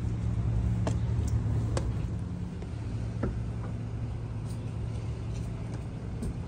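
A steady low rumble of a vehicle running on the street, loudest in the first couple of seconds, with three light taps of footsteps going up concrete steps.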